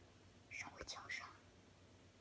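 A brief faint whisper, starting about half a second in and lasting under a second.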